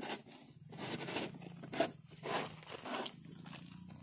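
Rustling in grass and undergrowth in short irregular bursts, from feet and the hand-held camera brushing through the vegetation.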